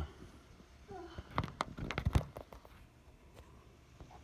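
A quick cluster of sharp clicks and knocks about a second and a half in, the loudest just past the middle, with one more click near the end. This is handling noise as the phone filming is moved.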